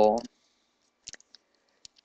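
A voice finishing a spoken word in Spanish, then a short pause with a few faint, scattered clicks.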